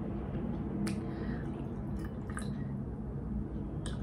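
Dark rum poured from a small glass bottle into a small drinking glass, with a few light clicks scattered through the pour.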